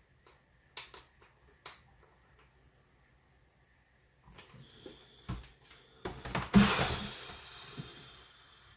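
A couple of faint clicks, then about six seconds in a loud, breathy exhale blown out through pursed lips that fades away over about two seconds.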